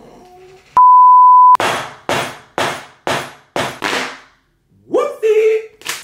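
A loud, steady, single-pitched censor bleep lasting under a second, followed by a run of six sharp smacks about half a second apart, each with a short fading tail.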